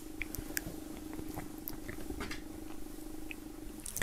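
A cotton T-shirt being folded by hand on a wooden table: soft fabric rustling and a few light ticks over a steady low hum.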